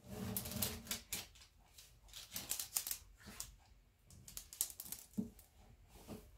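Small craft iron sliding and pressing over wrapping paper glued to a wooden tabletop, heat-setting the decoupaged paper. It makes irregular bursts of papery scraping and rustling, three stretches of it with short pauses between.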